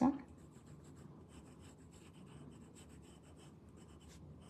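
2B graphite pencil shading on a paper drawing tile: a steady run of quick, fine scratchy strokes.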